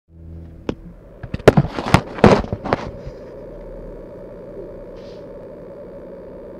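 A quick run of about ten sharp knocks and clacks over two seconds, handling noise from a phone being moved and set in place beside an acoustic guitar. After that only a steady low hum remains.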